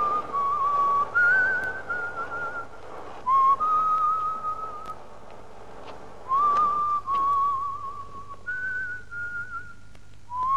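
A man whistling an old melody, slow phrases of held notes with a slight waver, broken by short pauses.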